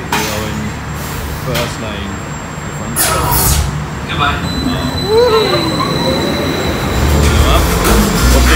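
Roller coaster loading station: a steady low rumble of ride machinery with a few sharp metal knocks and clanks, and voices in the background. A thin steady high tone sounds for a few seconds in the middle.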